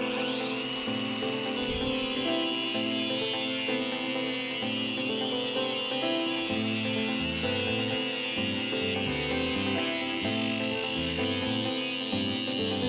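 Background music with a plucked melody over an angle grinder. The grinder spins up at the start, then runs with a steady high whine as its cut-off disc cuts into the steel excavator thumb.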